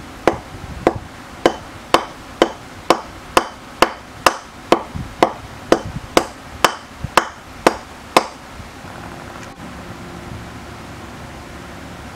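A hammer striking a wooden block in evenly spaced, sharp blows, about two a second, roughly seventeen in all. The blows stop about eight seconds in, and a steady low hum is left.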